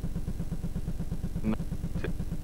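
A low pulsing hum in the old VHS recording, about a dozen beats a second, running steadily under the programme sound. A man's voice gives a brief syllable about one and a half seconds in.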